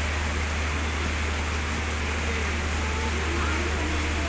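Air-conditioned LHB passenger coaches of an electric express train rolling slowly past as it pulls out of a station: a steady low rumble with an even hiss over it.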